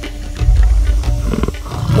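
Asiatic lion roaring: a deep roar that starts about half a second in and runs nearly to the end, over background music.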